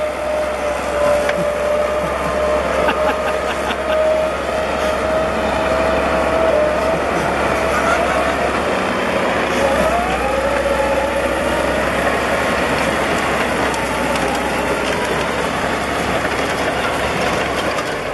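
Caterpillar D8 crawler dozer's diesel engine working under load and its steel tracks clanking as it drags a crushed pickup truck on its rear ripper. A steady whine runs through the noise, drops, then climbs again about halfway through.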